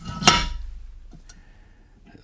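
Cast-iron cylinder head of a Universal Atomic 4 engine set down over the head studs onto the block: one metal clunk with a brief ring that dies away over about a second, followed by a couple of faint light clicks.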